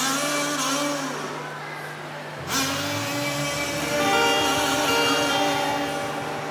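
Live acoustic band music: singing over acoustic guitars, then a held chord of steady notes from about two and a half seconds in.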